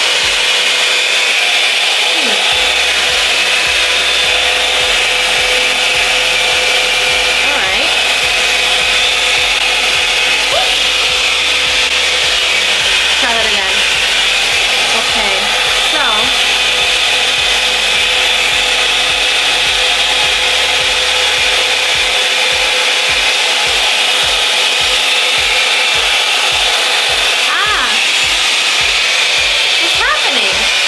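Revlon One Step Blowout Curls hot-air curling wand running on its medium heat setting: a steady rush of blown air with a high whine from its fan motor, coming on at once and holding level throughout.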